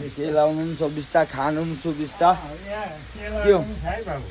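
Food sizzling in a pan on a gas stove, faint under a man's talking.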